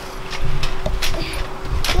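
Rumbling handling noise and wind on a handheld camera's microphone as it is swung about while bouncing on a trampoline, with a few sharp knocks.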